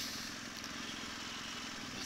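BMW R1200GS boxer-twin engine running steadily at low road speed, under a steady hiss of wind and road noise picked up by a bike-mounted GoPro.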